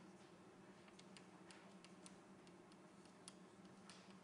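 Near silence: faint, irregular ticks of chalk on a blackboard over a low steady room hum.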